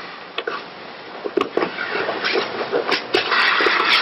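Cloth of martial-arts uniforms rustling, with scattered light knocks of bodies and feet on the mat as the thrown partner gets back up; the rustling thickens near the end.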